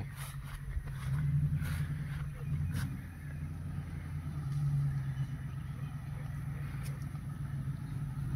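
Pickup truck towing a trailer, its engine running at low speed as it rolls in: a steady low drone that swells a little about a second in and again around five seconds, with a few faint clicks.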